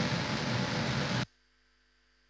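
Steady hiss and room noise from a field recording that cuts off suddenly a little over a second in, leaving near silence with a faint electrical hum.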